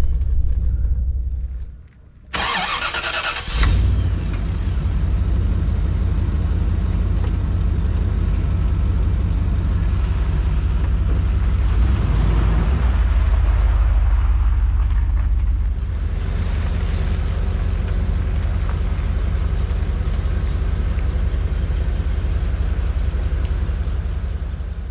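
A Bentley Turbo R's turbocharged 6.75-litre V8 running at a steady idle, a deep low rumble, swelling slightly around the middle. About two seconds in, after a brief quiet dip, comes a short loud burst of rushing noise.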